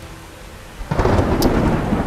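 A sudden loud, deep rumble like thunder, starting about a second in and rolling on: a comic sound effect for a stomach churning from too much chilli.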